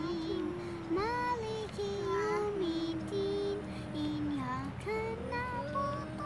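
A child's voice singing a slow melody in long, held notes that slide and waver in pitch.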